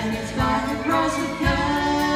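A woman and a man singing a gospel song together into microphones, with guitar accompaniment.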